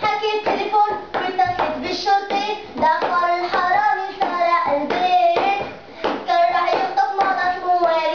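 Children singing a song in Arabic, with hand claps sounding through it.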